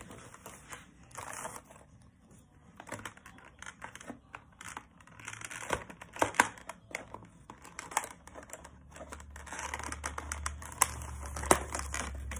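Plastic packaging and cardboard crinkling and rustling as a toy horse is worked loose from its box, with irregular sharp clicks and snaps.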